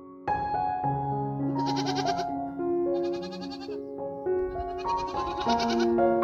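A goat bleating three times, each bleat a quavering call about a second long, over background music.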